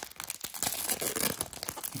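Foil wrapper of a 1994 Studio baseball card pack being torn open by hand, crinkling with many quick, sharp crackles.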